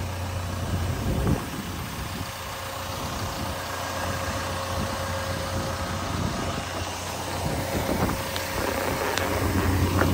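Caterpillar 320 Next Gen excavator's diesel engine idling with a steady low hum, and a single sharp thump about a second in.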